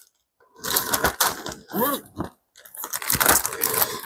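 Irregular crunching and clicking handling noises, with a brief murmur of voice about halfway through.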